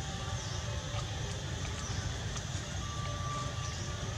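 Steady outdoor background noise with a fluctuating low rumble, a few faint clicks and a faint thin tone near the end.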